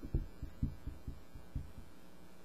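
Footsteps on a floor: soft, low thumps, about three a second.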